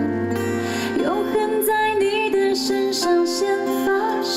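A woman singing a Mandarin pop song live, accompanied by guitar.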